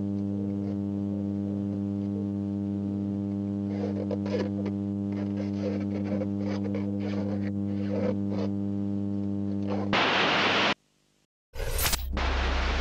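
Steady electrical mains hum on a low-quality hidden-camera recording, with faint scattered knocks and rustles. About ten seconds in it gives way to a loud burst of static hiss, a moment of silence, and a second burst of static over a low drone.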